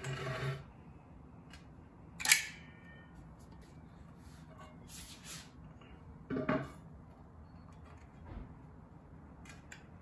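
Caulking gun being worked while laying silicone sealant along a wheel seam: a sharp metallic click a little over two seconds in, and short creaky bursts at the start and at about six and a half seconds.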